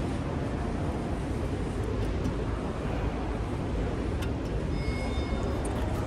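Steady low rumble of a large indoor shopping mall's background noise, with a few faint clicks. Brief thin high tones sound about five seconds in.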